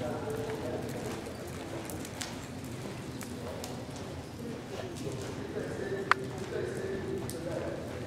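Horse cantering on the left lead over sand arena footing, its hoofbeats under a background of talking voices. One sharp click comes about six seconds in.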